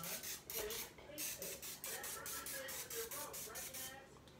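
Aerosol cooking spray hissing onto a metal muffin pan in quick, repeated short spurts as each cup is coated.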